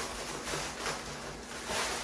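Plastic mailer bag rustling and crinkling in short bursts as it is handled and an item is pulled out of it.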